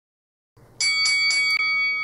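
Boxing ring bell struck four times in quick succession, about four strikes a second, starting almost a second in. The ringing holds on after the last strike.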